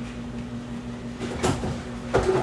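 A kitchen cupboard door knocks shut with a short clatter about one and a half seconds in, over a steady low hum.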